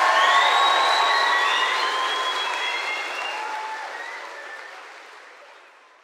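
Crowd applauding with some cheering, fading away steadily until it has nearly died out by the end.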